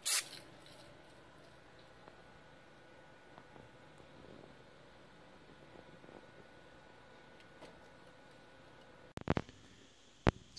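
Aerosol spray can of primer giving one short burst of spray, a sharp hiss well under a second long. After it, only faint room noise, with a few knocks near the end.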